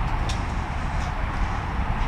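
Steady background rumble and hiss, with a faint click shortly after the start.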